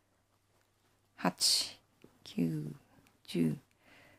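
A woman's voice softly counting knitting stitches aloud in Japanese, one number about every second, starting about a second in.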